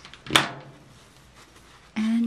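A single sharp knock about a third of a second in: a plastic hot glue gun being set down on a craft cutting mat.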